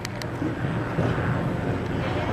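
A steady low engine drone, with a few sharp clicks right at the start.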